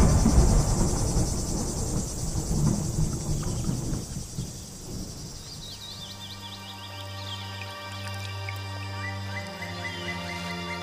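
Trailer sound design of pond ambience: a low rumble dies away over the first four seconds while insects chirr steadily and high. About six seconds in, a low held music drone enters, with short high chirps over it.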